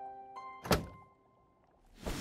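Soft background music notes that fade away, with a single sharp thunk of a door being shut about three quarters of a second in.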